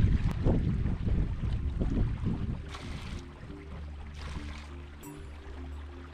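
Water bottle being filled in a shallow hill stream: running water gurgling into the bottle, with wind rumbling on the microphone that fades over the first few seconds. A faint steady low hum runs through the second half.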